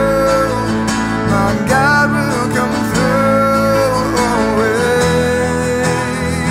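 Worship song: a man singing long held notes over a strummed acoustic guitar, with a steady low accompaniment underneath.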